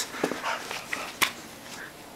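Pit bull puppies making small dog noises as they play, with one sharp click or knock a little past the middle.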